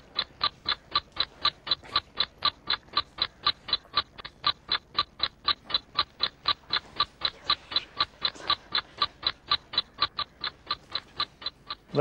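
Ticking clock sound effect, a steady tick about four times a second, marking the one-minute answer time as it runs down; it stops just before the end.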